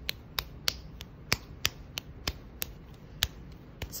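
An apple-sized lump of moist pottery clay slapped back and forth between the palms to pound it into a ball: a run of sharp, short pats, about three a second.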